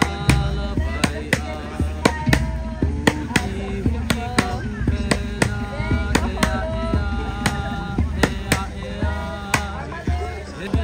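Hula music with a sharp, regular drum beat, the strikes mostly falling in pairs about once a second, under a held melody. The beat is typical of an ipu gourd drum.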